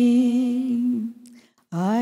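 An elderly woman singing unaccompanied into a microphone: one note held steady for about a second, a short breath pause, then a new note sliding up into place near the end.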